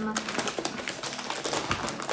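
Potato chip bag crinkling as it is handled and pulled open by hand: a rapid, irregular run of small crackles.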